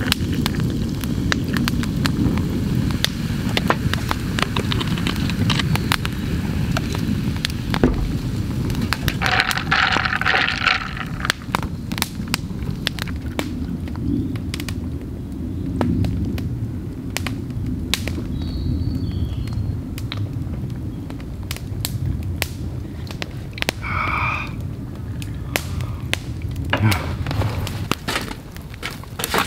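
Wood campfire crackling, with sharp irregular pops scattered throughout over a steady low rumble.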